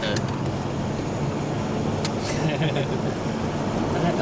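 Steady engine and tyre noise inside a car driving on a wet road.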